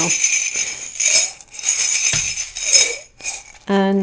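Small metal charms jingling and rattling inside a ceramic mug as it is shaken in several swells, being cast for a charm reading; the rattling stops a little after three seconds in.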